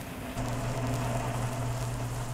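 Radio sound effect of a car motor running: a steady low drone that starts about half a second in, over the old recording's even hiss.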